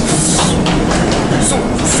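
Loud steady rumble with rattling and a few knocks while walking through an airliner's jet bridge.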